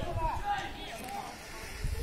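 Indistinct voices of players and onlookers calling out around a football pitch, fading after the first half-second, over a low rumble.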